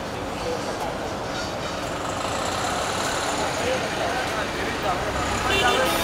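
Steady street traffic noise mixed with indistinct crowd voices, with a short higher-pitched tone just before the end.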